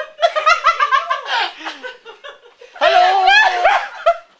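Several women laughing and exclaiming: quick, high-pitched bursts of laughter, then a longer high voice about three seconds in.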